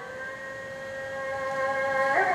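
A held instrumental chord from the stage accompaniment: several steady tones sounding together without wavering, slowly swelling in loudness.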